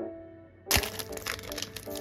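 Plastic sleeve of a sticker sheet crinkling and crackling as it is handled, starting suddenly about a second in and going on as a dense crinkle. Soft piano background music plays underneath.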